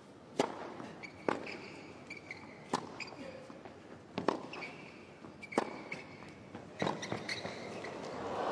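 Tennis rally on a hard court: six clean racket strikes on the ball, each about a second and a half apart, starting with the serve. Short, high sneaker squeaks on the court surface come between the shots.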